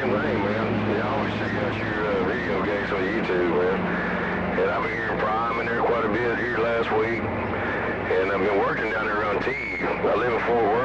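A distant station's voice coming in over a CB radio receiver, talking continuously over a bed of static and too garbled to make out. Steady low humming tones run under it for the first two seconds.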